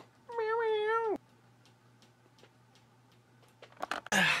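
A single meow-like call, under a second long, wavering in pitch and then dropping at the end, followed by a few faint clicks near the end.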